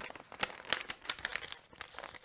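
Packaging being handled by hand: irregular crinkling and crackling of paper or plastic wrapping as it is moved about.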